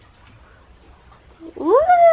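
A domestic cat meowing once, a long meow that starts near the end, rises sharply in pitch and then slides slowly back down.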